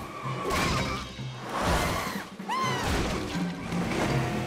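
Cartoon soundtrack: background music with hissy whoosh and crash effects as a van speeds by. About two and a half seconds in there is one short pitched cry that rises and falls.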